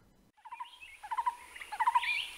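Small animal calls: bursts of quick chattering notes repeated about every half second, growing louder, over a faint steady high hiss.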